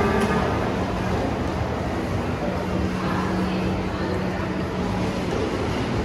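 Steady shopping-mall interior ambience: an even rushing noise with a low steady hum underneath and faint voices mixed in.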